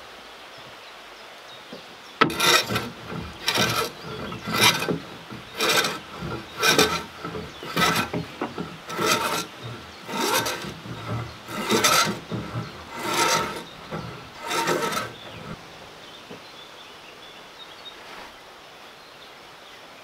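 A hand tool rasping along a wooden log in about a dozen even strokes, roughly one a second, that stop about fifteen seconds in.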